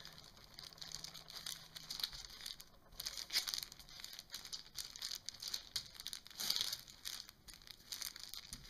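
A hand rolling a rope of homemade air-dry clay back and forth on a paper-covered table: faint, irregular rustling and crinkling of the paper under the palm, with a couple of louder brushes about three seconds in and again near the end.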